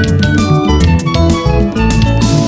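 Instrumental break in a Yoruba gospel song, with no singing: a band's guitar lines over a moving bass and drums, playing at full volume.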